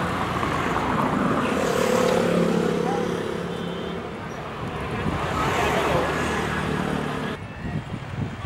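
Busy open-air market ambience: a murmur of voices over a steady, traffic-like background hum. It drops off abruptly near the end.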